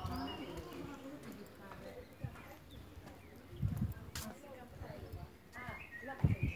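Faint, unintelligible voices in the background, with a couple of brief clicks.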